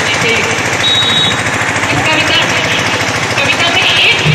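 A crowd of young people clapping and calling out, with a voice over a loudspeaker, all loud and dense.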